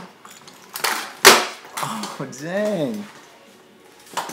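A kick scooter knocks sharply on a concrete garage floor about a second in, with a smaller knock just before it. Then a person's voice calls out once, rising and falling in pitch.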